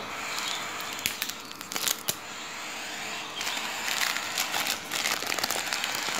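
A foil bag of hand-feeding formula crinkling and crackling as it is handled, in irregular crinkles.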